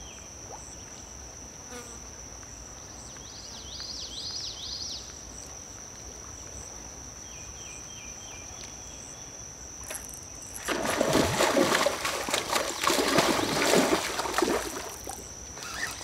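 A steady high-pitched insect buzz, with short bird-like chirps around four and nine seconds in. From about eleven seconds a louder stretch of rough, crackling noise sets in and lasts some five seconds.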